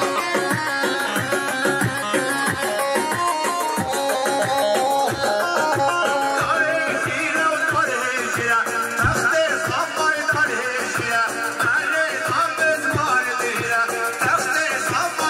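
Kurdish wedding dance music for a halay line dance: a quick, ornamented melody over a steady drum beat. A singer's voice joins about six and a half seconds in.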